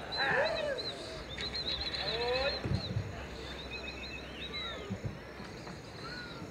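Birds calling in many short, repeated chirps and sliding whistles, with a couple of low thuds.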